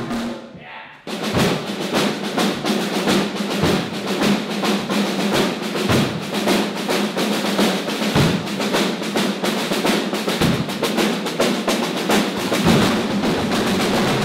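Many drum kits played together as one ensemble: a dense, fast groove of snare, tom and cymbal hits that comes in suddenly about a second in and keeps going.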